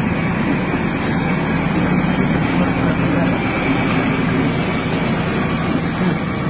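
A vehicle engine running steadily with a low, even hum, most likely a fire truck's, under a loud din of voices.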